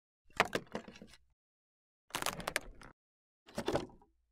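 Three short, separate door sounds, each starting sharply and dying away within about a second, with silence between them.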